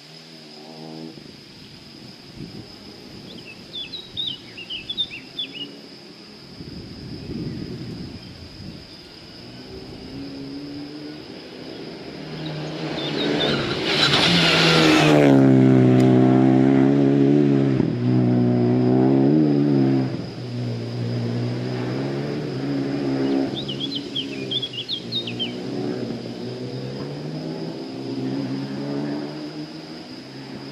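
A rally car at speed on a closed stage road, heard building from far off, passing closest and loudest about fourteen to fifteen seconds in, then fading away with its engine note rising and dropping through gear changes. A bird chirps briefly twice, early and late.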